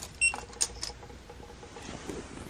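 A short, high electronic beep about a quarter second in, followed by a few faint clicks.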